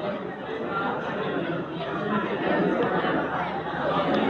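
Indistinct chatter of several voices overlapping in a large room, with no one voice standing out.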